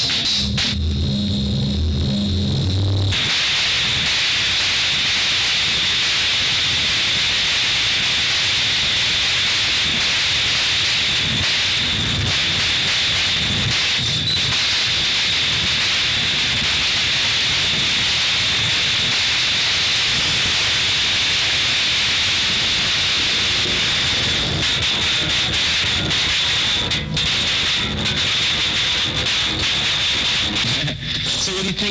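Experimental noise music: a low buzzing drone for the first three seconds gives way to a dense, steady wall of hiss with a high whistling tone running through it.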